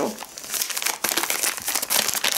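A plastic courier mailer bag crinkling as it is handled, a continuous run of rustles and small crackles.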